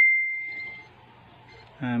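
A single high, clear ding that rings on one tone and fades away over about a second, with a voice starting near the end.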